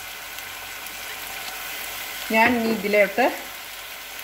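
Sliced onion, beans and peppers frying in an oiled steel wok, a steady sizzle as green chili sauce is poured in. A voice speaks briefly a little past halfway.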